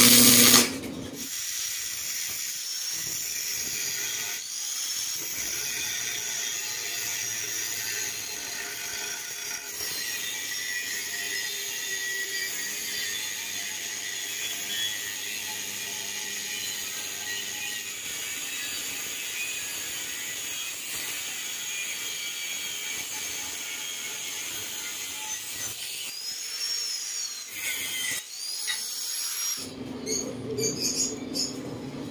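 Handheld angle grinder with a cutting disc cutting steel, running steadily as it trims the die piece to size. It opens with a brief loud clank, and the grinder stops near the end.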